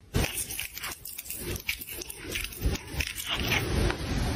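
A cat chewing and gnawing on a thin wooden stick, its teeth crunching into the wood in a quick, irregular string of bites.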